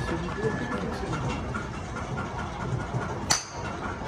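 A golf driver strikes a ball once, a single sharp crack about three-quarters of the way through, over a steady murmur of background voices and hum.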